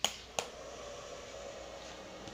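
A power strip switch clicks on, a second click follows about half a second later, and then the DC power supply's cooling fan starts up and runs with a steady whir.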